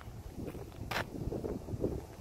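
Wind buffeting the microphone with footsteps on asphalt, and one sharp click about a second in.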